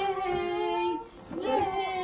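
Singing with music: a melody of long held notes that dips out briefly about a second in and then resumes.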